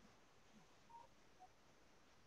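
Near silence: faint room tone, with two very brief faint beeps about a second in.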